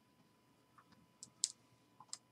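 A few faint clicks and taps from hands handling a small boxed set of trading cards, the sharpest about one and a half seconds in.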